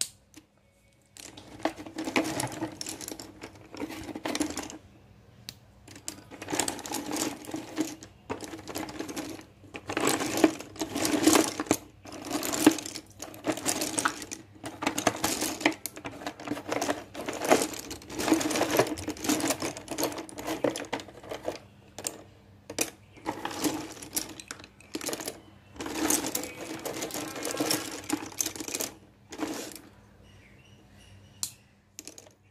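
Loose slate pencils clattering and clicking against each other as a hand stirs through a cardboard box full of them. The clatter comes in bursts of a second or few, with short pauses between.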